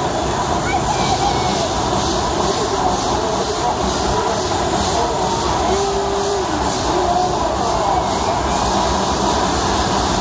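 A steady, loud roar of outdoor noise that keeps an even level throughout, with faint background voices mixed in.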